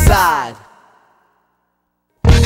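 A rap-rock track's band and voice slide down in pitch and die away within the first second, then a full stop of silence: a break in the song.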